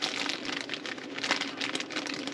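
Packaging being handled and opened by hand, rustling and crinkling in a run of small irregular crackles.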